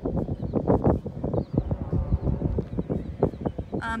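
Irregular low thumps and knocks, several a second.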